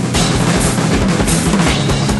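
Rock music with no singing: a drum kit played in a busy, dense pattern of hits over held electric guitar notes.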